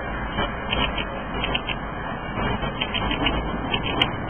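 Steady hum of city street traffic heard from high above, with cars moving along the road.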